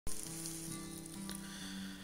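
Guitar playing sustained notes that ring into one another, changing pitch about every half second, over a steady high hiss.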